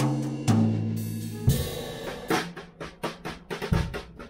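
Acoustic drum kit played: a few separate hits that ring on in the first second and a half, then a quicker run of strokes.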